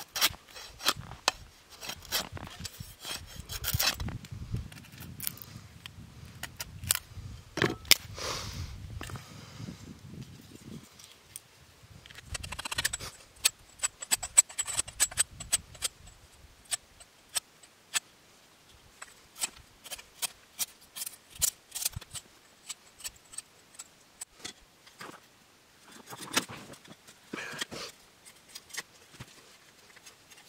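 Knife working dry wood: irregular sharp clicks and taps of the blade on the wood, dense in the first half and sparser later, with a few short scraping strokes near the end.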